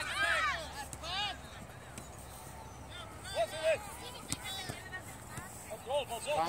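Scattered short shouts from players and sideline spectators at a youth soccer match, heard at a distance over steady outdoor background noise, with one sharp tap a little over four seconds in.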